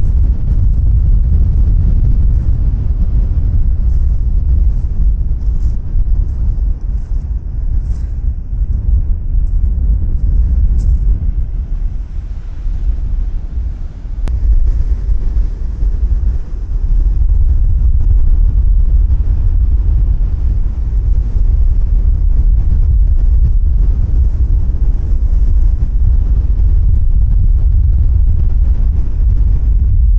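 Strong wind buffeting a handheld microphone as a heavy, steady low rumble that eases briefly about halfway through, with rough sea surf breaking on a shingle beach beneath it.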